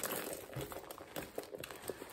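Handling noise from a quilted nylon handbag rustling as it is moved, with several light clicks from a metal chain strap and its clasp.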